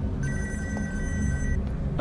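A telephone ringing tone: one steady electronic ring, a little over a second long, made of two close pitches, over a low steady background rumble.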